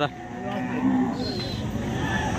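A Khillar bull lowing: one low, drawn-out moo in the first second.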